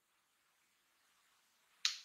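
Near silence, broken near the end by a single short, sharp click.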